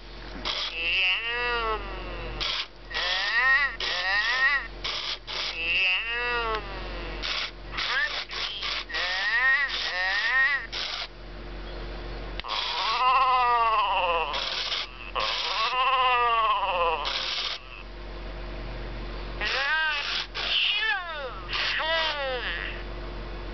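A 1998 Tiger Electronics Furby talking in its high electronic voice while being petted: warbling calls that rise and fall in pitch, in three runs with short pauses, broken by short noisy bursts between calls.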